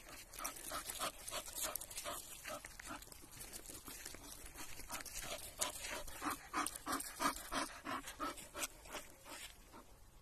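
Bull Terrier panting in a steady rhythm, about three breaths a second, loudest in the middle and latter part.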